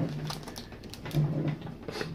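A person humming or murmuring low with closed lips, twice, about a second apart, over faint clicks of trading cards being handled.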